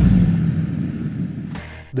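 Deep cinematic rumbling hit from a countdown-card transition sound effect, fading away over about a second and a half.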